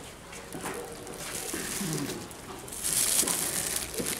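Plastic bag holding bread crinkling as it is handled, loudest for about a second near the end.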